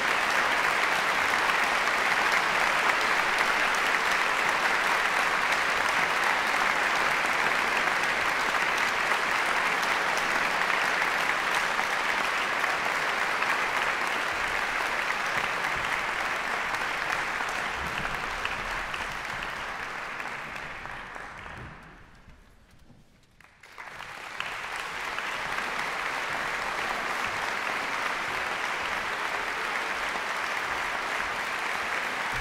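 A large audience applauding in a concert hall. The applause thins out about two-thirds of the way through, dies almost to nothing, then picks up again, somewhat quieter.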